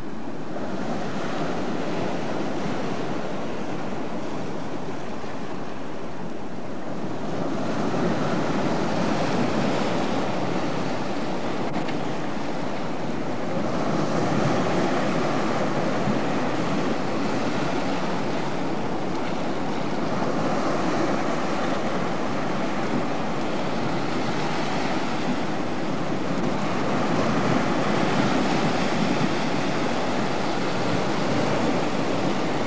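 Sea surf washing against a rocky shore: a continuous rush that swells a few times.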